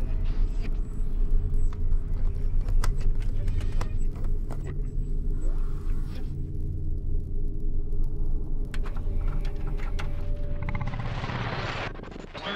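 Horror-trailer sound design: a loud, steady deep rumbling drone with scattered small clicks and knocks. Near the end the hiss of television static comes in as the drone fades.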